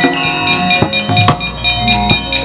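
Javanese gamelan playing: bronze metallophones and gongs ringing in many held tones, cut by sharp, irregular knocks every few tenths of a second from the dalang's keprak and cempala that drive the puppet action.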